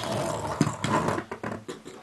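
Handling noise: rustling with many small clicks and knocks as a hand-held micro quadcopter is turned and moved in the fingers close to the microphone.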